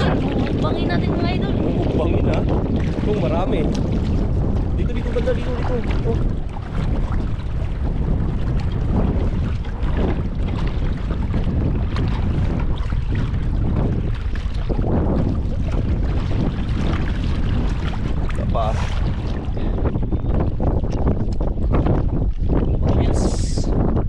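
Wind buffeting the microphone in a steady low rumble, with water sloshing and splashing as feet wade through shallow seawater.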